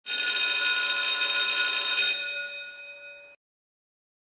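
A bright, ringing chime sound effect of many steady high tones, held loud for about two seconds, then fading away and cutting off abruptly a little past three seconds in.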